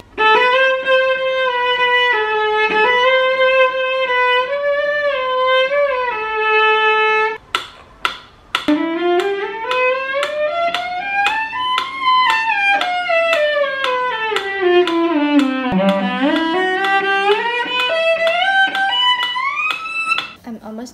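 Cello played with the bow: a few slow, held melody notes, then after a short break about seven and a half seconds in, a scale played step by step up, back down, and starting up again near the end.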